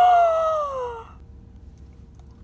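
A single high-pitched cry that slides steadily down in pitch for about a second, then stops, leaving a faint steady hum.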